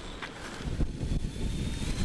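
Low wind rumble on the microphone, with the robot's cordless-drill gear motors faintly whining and rising in pitch as it drives on concrete.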